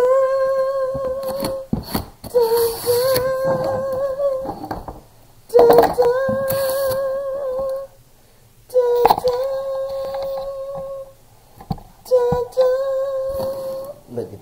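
A man's voice singing five long, wordless held notes, each opening on a short lower note and stepping up into a slightly wavering sustained tone, like a fanfare for the reveal. A few brief scuffs of the cardboard box being handled come between them.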